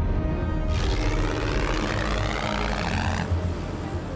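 Tense documentary background score over a deep, steady low rumble. A rushing whoosh comes in just under a second in and cuts off suddenly a little after three seconds.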